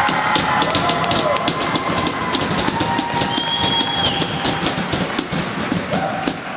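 Music playing, with many sharp taps and knocks throughout.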